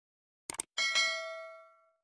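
Subscribe-button animation sound effect: two quick mouse clicks, then a single bell ding that rings on and fades out over about a second.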